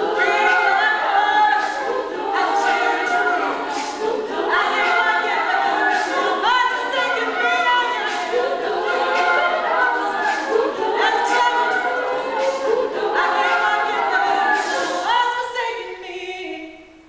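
Women's a cappella group singing: a soloist over layered backing voices, with a steady percussive beat. The singing ends right at the close.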